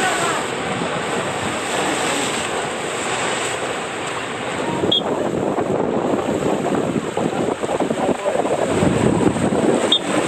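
Steady rush and splash of waterslide water: a rider shooting out of an enclosed speed-slide tube into the landing pool, then the slide's water flow running through the start section as the next ride begins.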